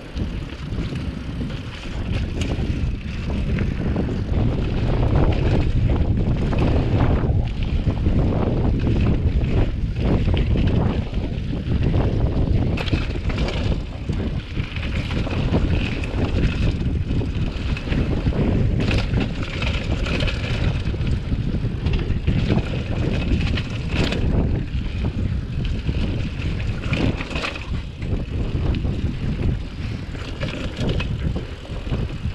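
Hardtail cross-country mountain bike descending a dirt trail: a continuous rumble of wind on the microphone and tyres on dirt, with many short knocks and rattles from the bike over bumps.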